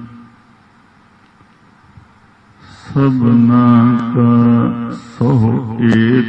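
A man's voice chanting Gurbani verses in a slow, sustained, held-note recitation. It breaks off at the start, leaves a quiet pause of nearly three seconds, then resumes with long drawn-out syllables.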